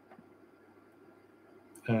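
Near-silent room tone with a faint steady hiss, then a man's voice begins just before the end.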